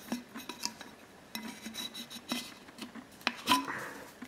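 Rolled paper insert being shaken and pulled out of an upturned single-wall 18/8 stainless steel Klean Kanteen Classic flask. Scattered light taps and clinks against the steel, with a louder knock and a brief ring about three and a half seconds in.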